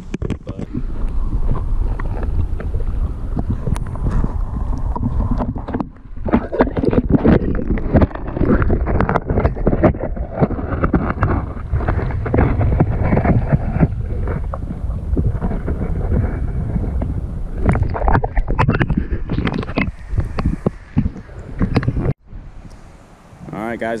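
Shallow creek water sloshing and splashing irregularly as someone wades through it, with low wind buffeting on the microphone.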